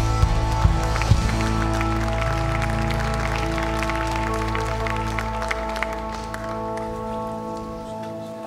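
Live worship band music winding down: held chords ringing and slowly fading, with a few sharp hits in the first second and the low end dropping away near the end.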